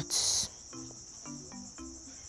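Crickets chirping steadily under soft background music of short, low, stepped notes, with a brief sharp hiss of noise just after the start.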